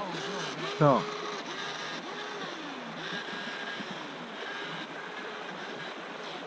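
Small electric motor of a DEERC H120 RC boat whining, its pitch rising, holding and dropping in repeated throttle bursts about once a second, over the steady rush of a shallow stream.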